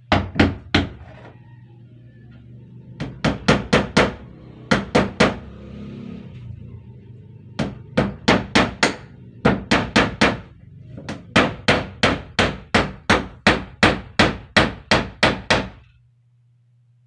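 A hammer driving nails into wood, in quick runs of sharp strikes about two to three a second with short pauses between runs. The longest steady run comes in the last few seconds.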